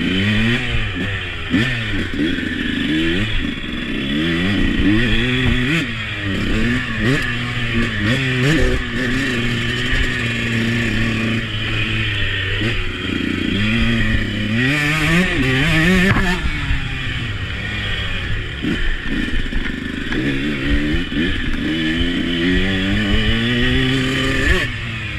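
Husqvarna 125 motocross bike being ridden hard over a dirt track, its engine revving up and dropping back again and again as the rider accelerates, shifts and slows. Clatter from the bike over the rough ground runs through it.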